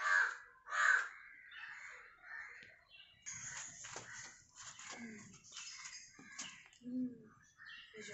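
A crow cawing twice, loud harsh calls at the start and about a second in, followed by softer scattered rustling.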